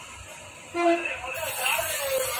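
A short horn toot about a second in, followed by talking, over the hiss of aerosol carburetor cleaner being sprayed through a thin straw into a scooter carburetor.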